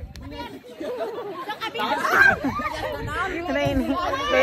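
Several people's voices chattering at once, with laughter.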